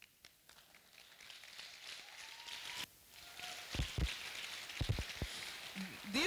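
Thin, scattered clapping and murmur from a large seated audience in a hall, building after about half a second: a weak, half-hearted round of applause. A few dull low thumps come in the second half.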